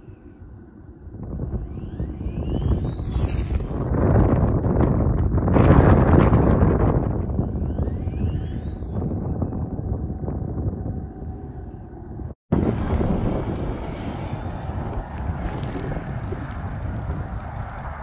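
Wind buffeting the microphone, a steady low rumble that swells to its loudest about five seconds in. It cuts out for an instant about two-thirds of the way through, then carries on at a lower level.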